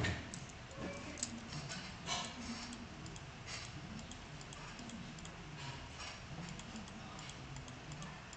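Quiet room tone with faint, light clicks and ticks, unevenly spaced at about two a second.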